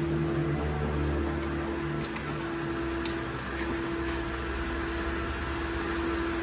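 A plastic squeegee card rubbing over window tint film on a car's door glass, faint under a steady hum with one sustained tone.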